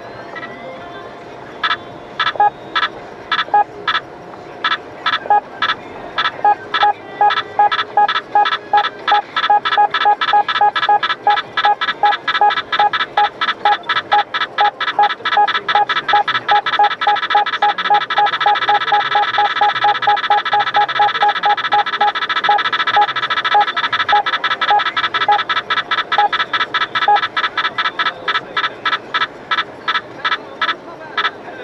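Car radar detectors sounding an alert on a police Ramer speed radar: short electronic beeps, about one a second at first, quickening to several a second and nearly running together midway as the radar signal strengthens, then slowing again near the end.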